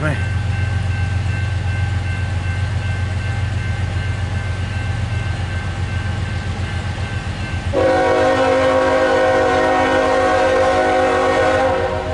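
Low steady rumble of an approaching diesel-hauled freight train; about eight seconds in, the lead locomotive's air horn sounds one long steady blast of several tones together, held for about four seconds. The lead unit is Norfolk Southern 8114, a GE ES44AC.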